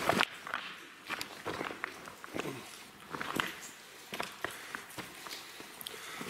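Footsteps and scuffs on rock: irregular steps with short crunches and clicks, several to the second at times.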